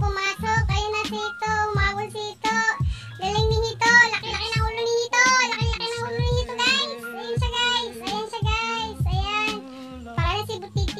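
Background pop song: a high, child-like singing voice over a steady beat.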